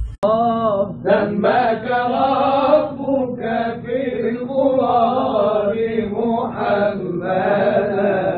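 Archival recording of a male Egyptian munshid singing a religious tawshih in Arabic: long held notes that bend and turn in melismatic ornaments over a steady low held tone. The sound is band-limited and dull at the top, as an old recording is.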